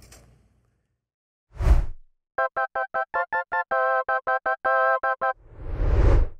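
Edited-in transition sound: a short whoosh, then a quick run of about twenty short electronic keyboard notes, mostly on one pitch with a few held a little longer, then a second whoosh swelling near the end.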